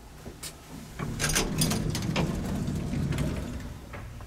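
Vintage Otis elevator doors sliding open: a clunk about a second in, then a rumbling slide with rattles that fades near the end.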